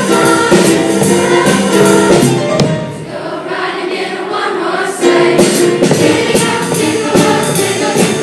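Large middle school chorus singing with drum kit and keyboard backing. The music softens and the drum strokes drop out for about two seconds in the middle, then the full band comes back in sharply.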